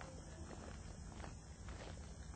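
Faint footsteps of a person walking, a few soft irregular steps over a low steady rumble.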